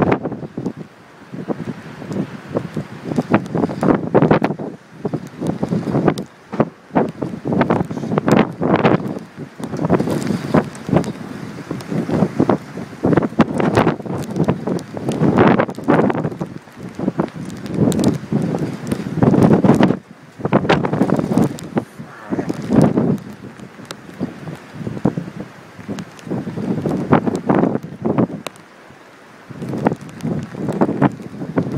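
Wind buffeting the microphone in irregular gusts, surging and dropping every second or so, with a brief lull near the end.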